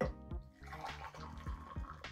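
Hot water poured in a steady stream from an electric kettle into a ceramic cup, starting about half a second in, to make shochu with hot water (oyuwari).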